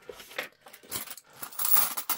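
Hands handling cash and a small plastic tray: a few light clicks, then paper rustling that grows loudest near the end.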